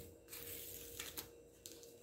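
Faint rustling of paper with a few light clicks: a sheet of paper flower stickers being picked up and handled on a desk.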